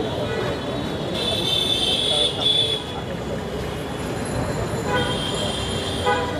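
Street ambience of a crowd talking over traffic. A loud high-pitched tone comes about a second in and lasts under two seconds, and a shorter one sounds near the end.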